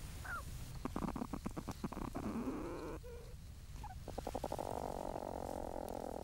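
Young platypus in the nesting chamber making a low, purr-like rattling call: a train of rapid pulses about a second in, and another near four seconds that runs into a steady buzz.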